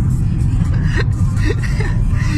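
Steady low rumble of a moving car, heard from inside the cabin, with faint snatches of voices over it.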